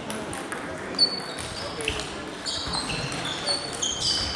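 Table tennis balls clicking off bats and tables in quick succession during doubles play, some clicks with a brief high ping. One sharp click about a second in is the loudest.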